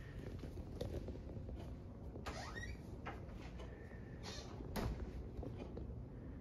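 Faint indoor movement noises: soft steps, rustles and small clicks over a low background hum, with a brief squeak about two seconds in and a sharper click just before five seconds.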